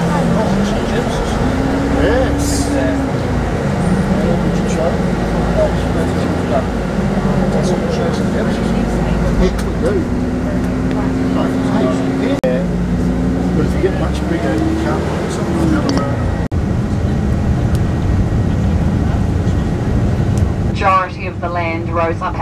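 Tour bus driving, heard from inside the cabin: a steady road and engine rumble, with the engine note rising and falling as it changes speed. A voice starts speaking near the end.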